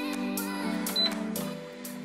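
Background music with a steady beat, and a short high beep about halfway through.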